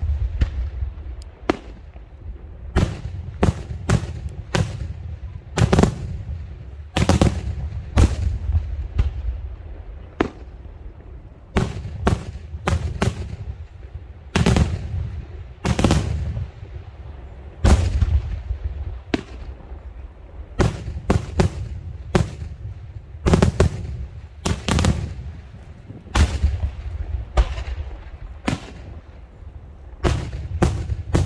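Daytime aerial fireworks shells bursting overhead in a continuous, irregular run of sharp bangs, about one to two a second. Each bang trails a low, echoing rumble.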